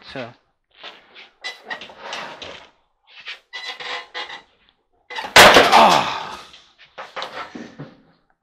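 Scattered handling noises as gloved hands work at a clothes dryer's cabinet and control console. About five seconds in comes a loud bang that dies away over half a second. A man's "Ah!" and a sigh follow.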